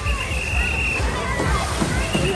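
Pool water sloshing and splashing, with people's voices in the background. A rider comes off a water slide and plunges into the pool with a splash near the end.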